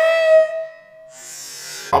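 A man's long, drawn-out 'What?' of disbelief rises to a high, strained note and is held until about a second in, then trails off. A short hiss follows before he speaks again.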